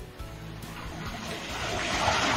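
Water gushing from a pipe outlet into a small pond waterfall, growing steadily louder as the rock that throttled the outlet is lifted off and the flow picks up.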